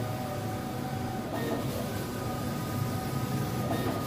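Skyjet 512 large-format flex printer running: a steady mechanical rumble with a motor whine as the print-head carriage travels across the banner, the sound shifting briefly about a second and a half in and again near the end.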